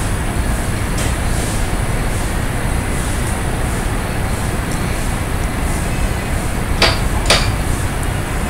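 Steady background noise, an even hiss over a low rumble, with two short sharp knocks about half a second apart near the end.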